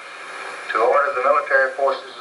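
Speech from a documentary narration, heard through a television speaker, starting after a short lull at the beginning.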